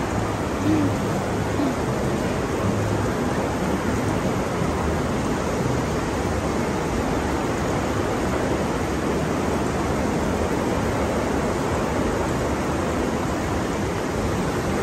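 Steady rushing background noise of a busy shopping-centre hall, with faint voices now and then.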